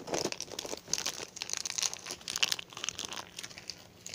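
Crunchy slime with foam beads being squeezed and worked by hand, giving a dense run of irregular crackles and pops.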